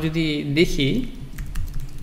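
Typing on a computer keyboard: a short run of quick keystrokes about midway, after a man's voice at the start.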